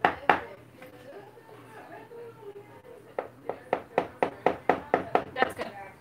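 A quick run of light taps and clicks, about four to five a second, starting about halfway through: a measuring cup scooping and knocking in a plastic mixing bowl of powdered sugar.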